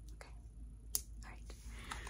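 A few soft, sharp clicks and a breath from a close-miked whispering voice in a pause between phrases, the loudest click about a second in.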